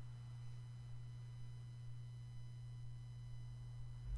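Faint steady low hum with a few thin, steady high-pitched tones over it, unchanging throughout.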